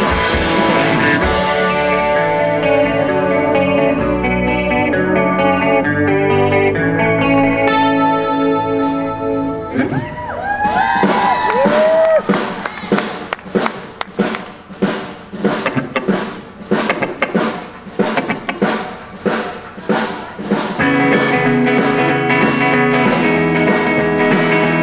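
Live rock band playing an instrumental passage on electric guitar and drum kit: sustained, full chords at first, a few bending guitar notes about ten seconds in, then a stop-start stretch of short, choppy, evenly spaced hits before the full band comes back in near the end.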